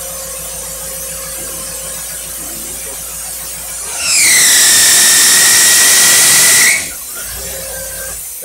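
Engine on a test stand running at idle through a Rochester Quadrajet four-barrel carburetor. About four seconds in, the throttle is opened and held for nearly three seconds: the engine gets much louder, with a high howling whine from the alternator that dips in pitch at first and then holds, before it drops back to idle.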